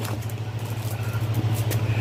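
A steady low mechanical hum, with a short click at the start.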